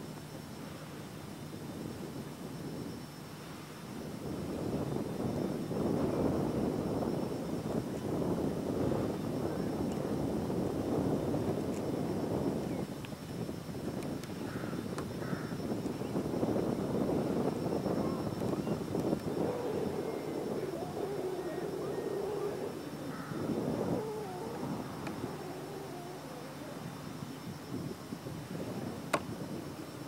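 A low, steady engine drone from a distant machine, swelling about four seconds in, holding for some twenty seconds and fading near the end. A single sharp click comes shortly before the end.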